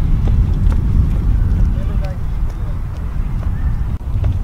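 Loud, steady low rumble on the microphone of a handheld camera moving outdoors, with a few faint clicks.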